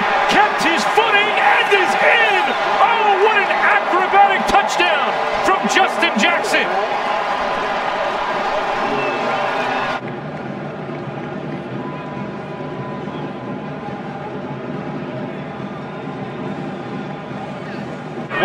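Stadium crowd cheering and shouting for a touchdown run, loud and full of whoops at first and then settling. About ten seconds in it cuts suddenly to a quieter, steady stadium crowd murmur.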